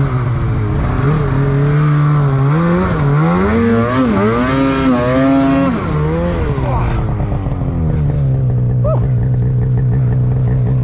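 Snowmobile engine revving hard, its pitch climbing and wavering as the sled pushes through deep powder. About six seconds in the revs fall away, and the engine settles to a steady idle as the sled comes to a stop stuck in the snow.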